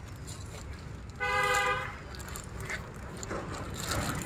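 A vehicle horn sounds once, a steady single-pitched toot lasting under a second, about a second in, over a steady low rumble.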